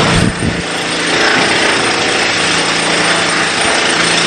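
A machine running steadily: a low, even engine-like hum under a loud, constant hiss.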